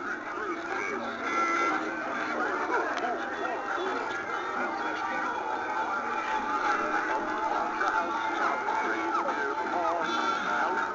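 Several animated dancing Santa figures playing their recorded Christmas songs at the same time, a steady jumble of overlapping music and singing.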